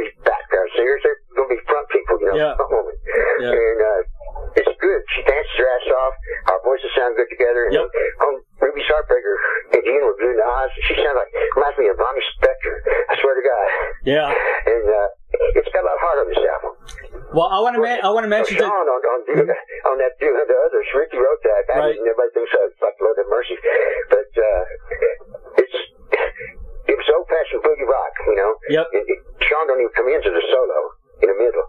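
Continuous conversational speech with the thin, narrow sound of a telephone line, talking without a break.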